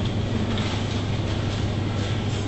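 Steady supermarket background noise: an even hiss over a constant low hum, with no distinct events.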